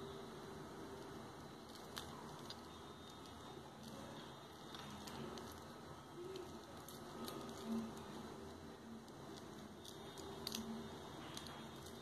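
Faint handling noise: scattered light clicks and rustles as a gold-coloured metal link watch bracelet, still partly wrapped in protective plastic, is turned in the fingers.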